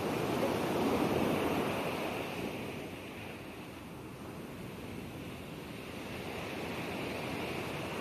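Ocean waves washing in: a steady hiss that swells about a second in, falls away in the middle and builds again near the end.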